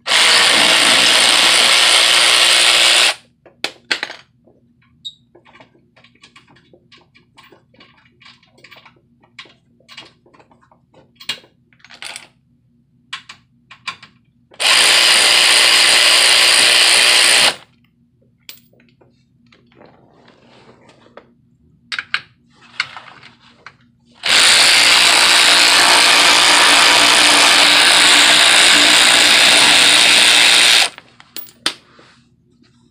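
Power ratchet spinning out the bolts of a car's under-engine splash shield in three runs: about three seconds at the start, about three seconds midway, and a longer run of about six seconds near the end. Scattered small clicks and knocks come between the runs.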